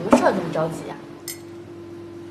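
A woman speaks briefly, then a single short, ringing clink of tableware, like a cup set down on a table, about a second and a half in, over a steady low hum.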